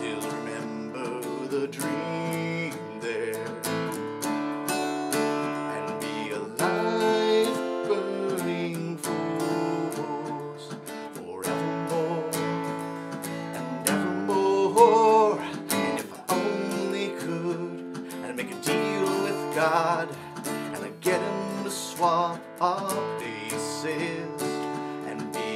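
Acoustic guitar strummed in a steady rhythm while a man sings over it.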